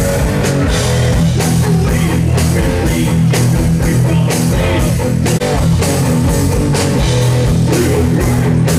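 Loud rock music with electric guitars over a steady drum-kit beat.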